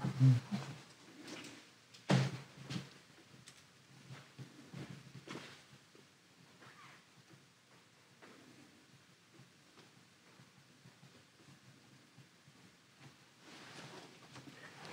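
Mounted photo prints being handled on a table: a few soft knocks and rustles of mat board, the clearest about two seconds in, then faint handling sounds in a quiet room.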